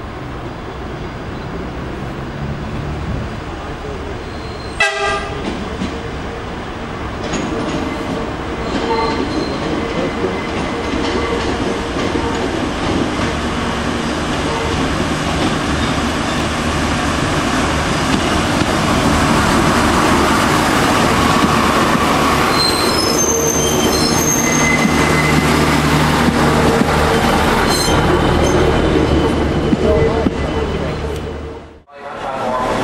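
An Irish Rail diesel multiple-unit railcar approaching and running past, its diesel engine and wheels growing steadily louder until it is close. A short horn toot comes about five seconds in, and high-pitched wheel squeal from the curved track comes in the second half.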